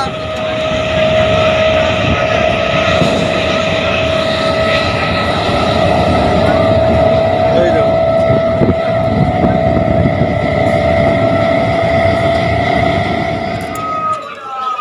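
Suburban electric multiple-unit train running, heard from inside the coach near the open door: a steady high whine with overtones over a loud rumble and rushing air.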